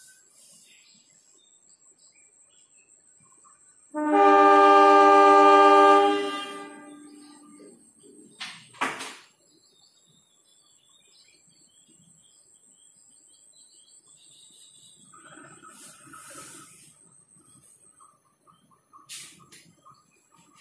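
Diesel locomotive horn sounding one long blast of about two and a half seconds, several tones together, starting about four seconds in. A single sharp click follows a few seconds later.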